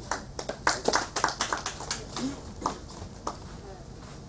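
A few people clapping briefly: scattered claps that are densest in the first two seconds and thin out by about three seconds in.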